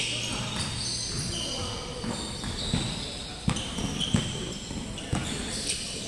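Basketballs bouncing on a hardwood gym floor, a knock every half second to a second, echoing in the large hall, with short high squeaks and distant players' voices.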